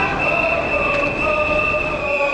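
Long, steady high-pitched whistling tones, several overlapping at different pitches, over loud street noise.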